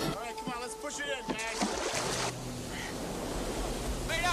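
A man's short excited shouts, several in the first second and a half, over the steady rush of wind and water from a speedboat under way on open sea.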